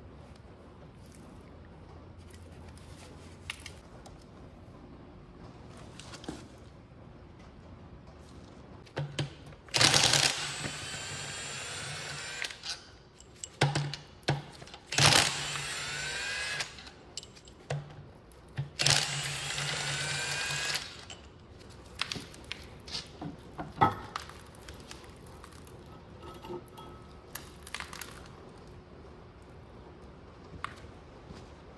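A handheld power tool running three times for two to three seconds each, its motor pitch rising as it spins up, as bolts are run out of parts on the side of a diesel engine block. Scattered clinks and knocks of metal tools and parts come between the runs.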